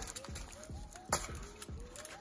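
Ryobi utility knife slicing open a heat-sealed plastic bag, with faint small crinkles and a sharp click about a second in.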